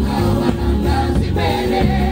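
Mixed gospel choir singing in full voice through microphones, over amplified instrumental backing with a bass line and a steady beat.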